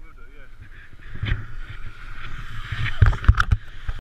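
Wind rumbling on the camera microphone, with a quick cluster of knocks and clatter near the end.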